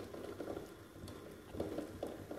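Faint bubbling and soft popping from pans simmering on a stovetop, with a couple of light spoon sounds in the sauce pan.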